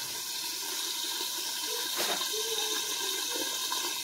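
Fish frying in oil in a pan under a glass lid: a steady sizzling hiss, with a light click about two seconds in.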